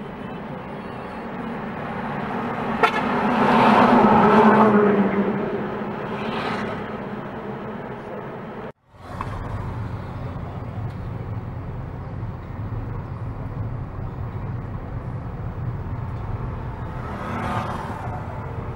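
Road noise from a moving vehicle, with a horn sounding as traffic passes about three to five seconds in. After a sudden brief cut, a steady low engine drone carries on.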